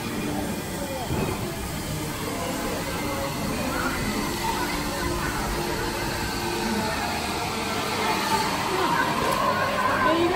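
Steady background noise of a busy indoor venue, with indistinct voices in the background.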